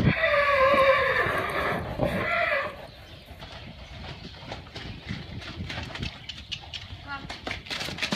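A Thoroughbred filly whinnying loudly for about two and a half seconds, the call wavering and dropping in pitch, followed by the quieter thud of her hoofbeats on the sand as she moves around the pen.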